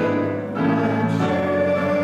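Congregation singing a hymn together in long, held notes.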